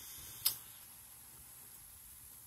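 Faint background noise with a single short, sharp click about half a second in.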